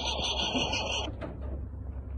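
Starter motor of an old pickup truck cranking with a steady whirring whine, cutting off suddenly about a second in.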